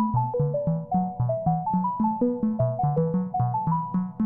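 A Eurorack modular synthesizer sequenced by a Westlicht PerFormer plays a quick, even run of short synth notes with sharp attacks, a low line under higher notes. These are layered copies of one note pattern, offset against each other by recorded CV curves modulating their clock and gate probability.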